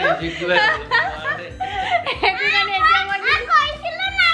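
A woman and a young girl talking and laughing, with music playing underneath.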